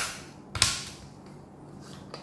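Two sharp plastic clicks about half a second apart, the second louder, from a handheld infrared thermometer's plastic body being snapped and handled in the hands.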